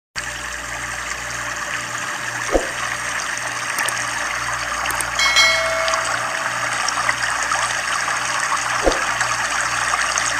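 Steady rushing water from a waterfall and river rapids. A brief ringing sound effect comes about five seconds in, and there are two soft knocks.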